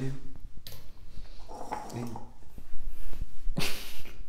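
A man laughing in short breathy huffs, with a brief voiced laugh in the middle and a loud burst of breath near the end.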